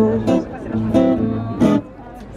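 Live acoustic guitar and piano accordion playing a rhythmic pop-rock accompaniment, with chords strummed in short stabs. The sound drops away briefly near the end.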